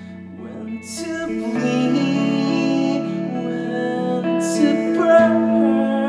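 Slow song on an electric guitar played live through an amplifier: chords left to ring, quiet at first, with a fresh strum about a second in and another a little past the middle.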